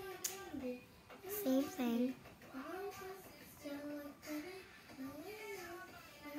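A child singing or humming a tune without clear words, with held notes and sliding pitch, and a few light clicks and taps of hands working play dough on a plastic plate, the sharpest just after the start.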